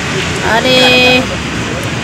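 A woman speaking, holding one steady drawn-out hesitation syllable for about half a second, with street traffic noise behind.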